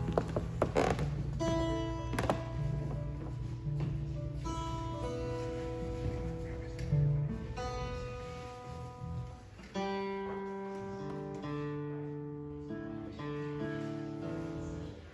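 Two acoustic guitars and an electric bass guitar playing without vocals: plucked guitar notes and chords ringing out over held bass notes.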